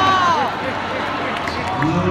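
Arena crowd noise, with a voice calling out with a rising and falling pitch at the start. The band comes in near the end with a steady held note.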